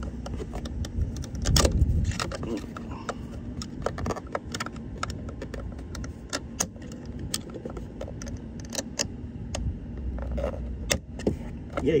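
A thin screwdriver tip picking and scraping inside the steering-wheel hub of a 2009 Volkswagen Jetta, making many light, irregular metallic clicks as it works at the airbag's spring clip, with a louder knock about two seconds in.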